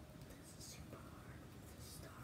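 A person whispering faintly, with soft hissy syllables about half a second in and again near the end, over low room noise.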